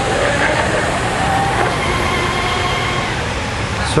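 Radio-controlled quarter-scale shovelnose hydroplane running flat out across a pond: a faint, steady engine whine, drifting slightly in pitch, over a loud steady rushing hiss.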